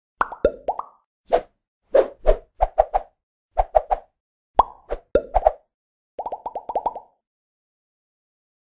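Cartoon pop and bloop sound effects from an animated logo intro: a string of short pops in small clusters, some sliding quickly up or down in pitch. Near the end comes a faster run of about eight matching blips.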